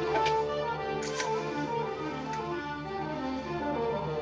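Orchestral film score music playing, with a few short clicks.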